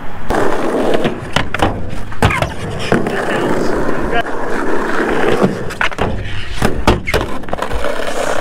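Skateboard wheels rolling over rough concrete with a steady grinding rumble, broken by frequent sharp clacks as the board rides over cracks and the deck knocks.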